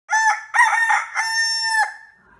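A rooster crowing: a short note, a longer wavering one, then a long held note that breaks off sharply.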